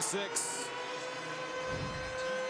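Stadium crowd noise with a steady held tone that starts about half a second in and carries on.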